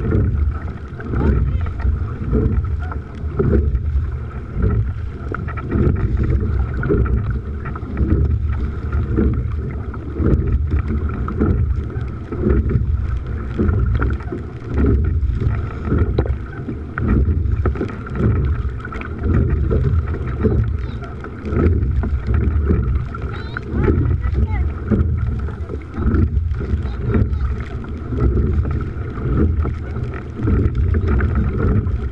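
Wind buffeting the microphone over water rushing past the hull of a coastal rowing boat under way, the noise swelling and easing about every two seconds in time with the rowing strokes.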